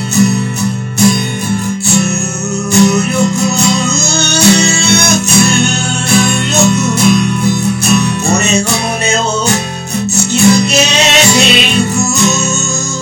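Instrumental passage of a song: guitar playing over a steady beat, with no lead vocal.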